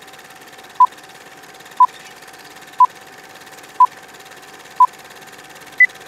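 Film countdown leader sound effect: a short beep once a second, five in all, then a single higher-pitched beep near the end, over a steady film hiss with a faint hum.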